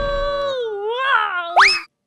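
Cartoon sound effects: a held synthesised tone bends and wobbles down and up like a boing, then a quick rising whistle glide and a short whoosh that cuts off suddenly near the end.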